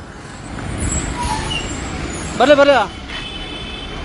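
Motor vehicle noise on a street, swelling from about half a second in, with a man's voice calling out briefly past the middle and faint high steady tones near the end.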